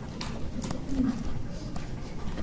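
A few light taps of a stylus on a tablet screen while writing, about three in two seconds, over low room noise, with a brief low murmur about a second in.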